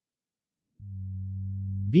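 A steady low electronic hum from the text-to-speech voice, starting about a second in and slowly growing louder, running straight into the synthetic speech that follows.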